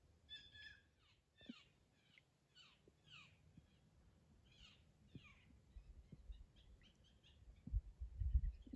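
A bird calling faintly: a run of short falling notes, about two a second, then a few quicker, shorter notes. A low thump comes near the end.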